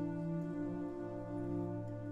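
High school concert band playing slow, held chords, the harmony shifting a little about half a second in and again near the end.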